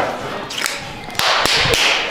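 A loaded barbell being racked after a squat: a sharp knock, then about a second in a heavy thud with a loud clatter of metal.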